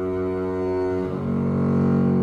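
Solo double bass played with the bow: one sustained note that gives way to a different note about a second in.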